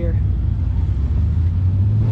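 Vehicle engines running with a steady low rumble.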